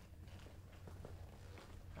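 Near silence: room tone with a low steady hum and a few faint light taps.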